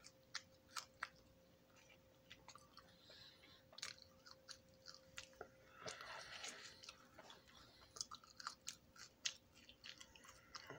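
French fries being bitten and chewed close to the microphone: irregular wet mouth clicks and smacks, in clusters, with no steady rhythm.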